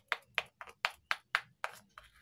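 A metal spoon knocking against the rim of a small steel bowl as thick batter is beaten by hand, with sharp clicks at a steady rate of about four a second.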